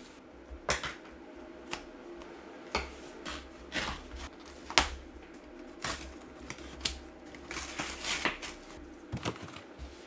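A cardboard Priority Mail envelope being opened and handled, with irregular paper rustles, crinkles and sharp snaps.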